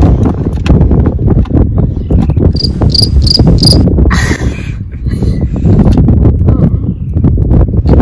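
Wind buffeting the microphone with a steady rough rumble. In the middle, four short high-pitched chirps come about a third of a second apart.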